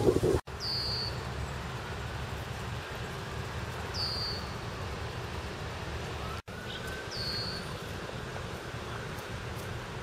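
A bird's short, high, falling call, repeated about every three seconds over a steady low rumble. The sound cuts out abruptly for an instant twice.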